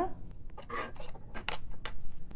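A few light clicks and taps as a plastic cup of water and a small jar with a metal lid are handled on a tabletop, with sharp clicks in the second half.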